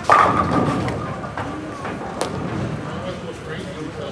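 Bowling ball hitting the pins at the start, a sudden crash with the pins clattering and ringing away over about a second. A single sharp click follows about two seconds later.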